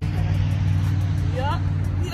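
A steady, low engine drone of a motor vehicle running, over outdoor background noise. Near the end a voice rises briefly.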